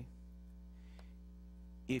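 Steady low electrical mains hum in the sound system during a pause in speech, before a man's voice comes back in near the end.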